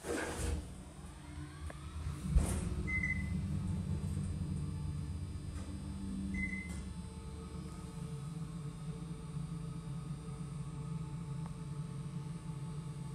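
Old Dover elevator: a thump about two and a half seconds in, then a steady low hum as the car runs, with two short high beeps a few seconds apart.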